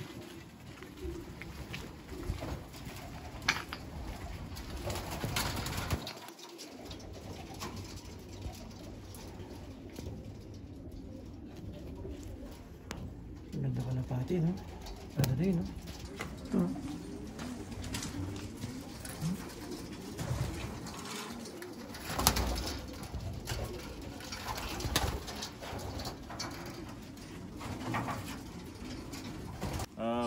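Racing pigeons cooing in their loft, low rolling coos clustered about halfway through, with scattered light knocks and clicks.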